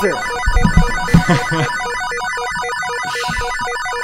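Electronic buzzer sound effect ringing like a telephone bell: a rapid, even pattern of pulsing tones, about four to five pulses a second, signalling that the round's timer has run out.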